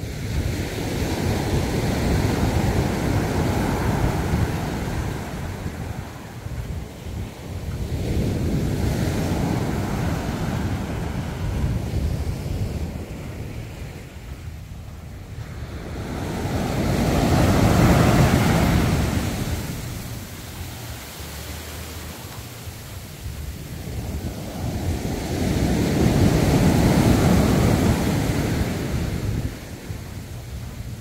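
Ocean surf breaking on a sandy beach: the wash of the waves swells and falls away four times, roughly every eight seconds, with the third and fourth breakers the loudest.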